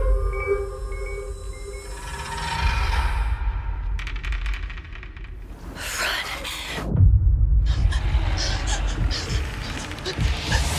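Film trailer score and sound design: a deep rumbling drone under soft sustained tones, with a few short high pips in the first two seconds. Loud, noisy bursts of sound effects break in about six seconds in and again from about eight seconds on.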